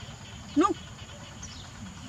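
A young macaque gives one short, rising-then-falling coo about half a second in.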